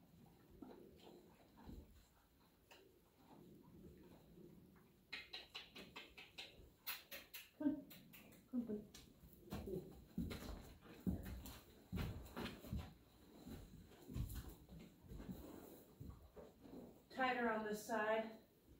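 Quiet, irregular scuffs and soft knocks of hands working on a horse and the horse shifting in its stall. A woman's voice comes in briefly near the end.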